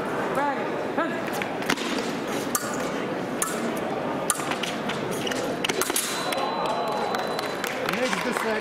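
Sabre fencing: scattered sharp metallic clicks and knocks of blades meeting and feet stamping on the metal piste, over steady background voices in a large hall.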